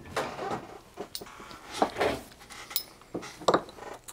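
Metal clinks and knocks, about seven spread over four seconds, as a steel machinist vise and tools are handled and set on a wooden bench.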